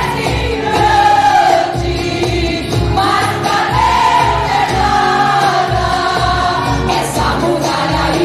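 Women's choir and congregation singing a Portuguese-language gospel song in unison over a band with a steady drum beat.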